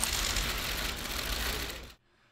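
A dense flurry of many camera shutters clicking rapidly at once, as press photographers shoot a group bow; it tails off and cuts off abruptly near the end.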